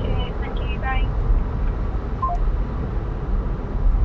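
Steady low road and engine rumble inside a car cabin at motorway speed, with a short faint beep about two seconds in.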